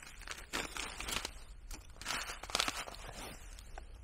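Foil-lined food pouch being torn open and pulled apart, with a run of irregular crinkles and crackles from the stiff foil.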